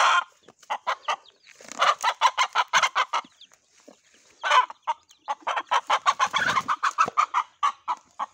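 Mother hen clucking in fast runs of short, sharp notes, two long runs with a short gap between them: the alarm clucking of a hen whose chicks are being picked up.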